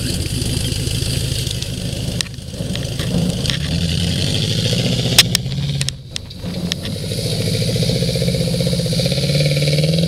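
Off-road trials 4x4's engine running under load on a muddy climb, its note rising and falling with the throttle. It drops away briefly about six seconds in, then builds back up. A few sharp knocks come just before the dip.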